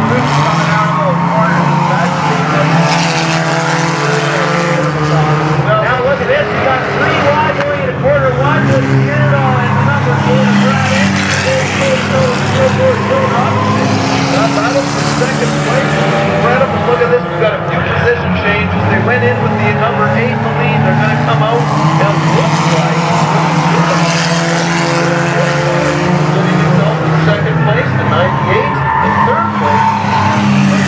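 Engines of several junker race cars running laps on a paved oval, their pitches rising and falling over one another as they lap and pass by.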